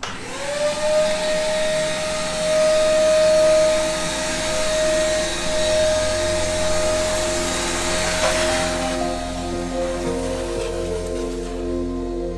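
Canister shop vacuum switching on, its motor whine rising and settling to a steady pitch, with the rush of suction as the hose draws dust off the granite stones. About nine seconds in the suction noise drops away and background music comes up.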